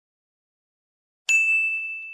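A single bright, bell-like ding, struck suddenly about a second and a quarter in and ringing on as it slowly fades.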